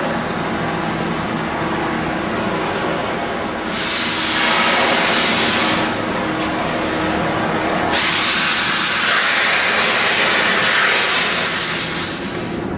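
Handheld gas torch hissing as its jet flame sets a cardboard box on fire, the hiss growing louder about four seconds in and again from about eight seconds to the end.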